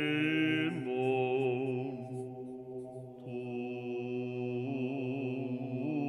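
Byzantine chant: a solo voice sings slow, wavering ornamented lines over a steady low drone (ison).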